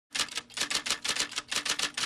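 A rapid, uneven run of sharp mechanical clicks, about seven a second, like keys being struck one after another.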